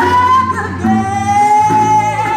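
A woman singing live with a blues band, holding wordless sustained notes: a short high note, then after a brief break a longer, slightly lower one held to the end. Guitars play underneath.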